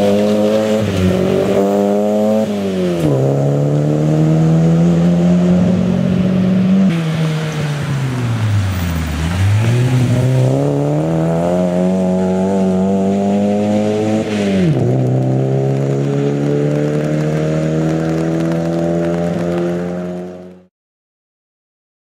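Škoda Felicia rally car's engine revving hard through the gears on gravel, its note climbing and dropping sharply with each change, with tyre noise on the loose surface. The engine note falls deep about nine seconds in, then climbs again. The sound cuts off suddenly near the end.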